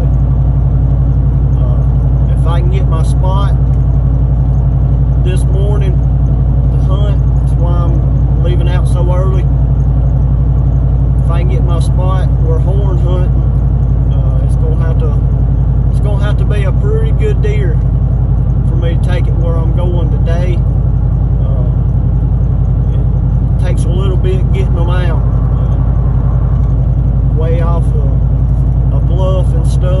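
Steady road and engine drone inside a truck's cabin while driving on the highway, with a voice talking over it.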